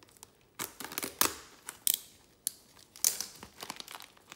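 A cardboard trading-card box being torn open and handled: several short rips and crinkles of card and wrapping.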